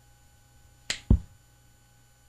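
A single sharp finger snap about a second in, the hypnotist's cue to wake the subject, followed at once by a louder, heavier low thump.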